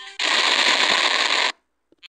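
A loud burst of harsh, crackling distorted noise, about a second long, that starts suddenly just after the music tails off and cuts off abruptly.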